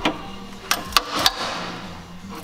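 Pliers clicking against the rusted sill sheet metal of a Mazda MX-5 NA as the jaws grip and work the panel, four sharp metallic clicks in the first second and a half.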